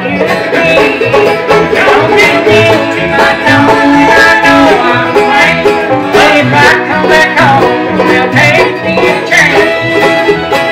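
Live bluegrass band playing: banjo, fiddle, mandolin and acoustic guitar together over a steady, even beat.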